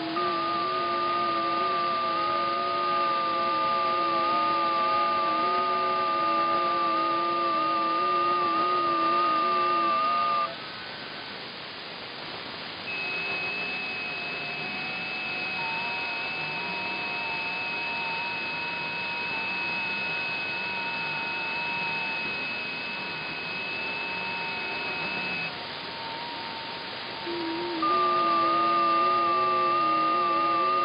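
FT8 digital-mode signals on the 40 m band at 7.074 MHz, demodulated through an RTL software-defined radio: several steady tones at different pitches, each stepping slightly in pitch, over a hiss of band noise. The tones stop briefly about ten seconds in and again a few seconds before the end, as one 15-second FT8 transmit cycle ends and a new set of stations begins.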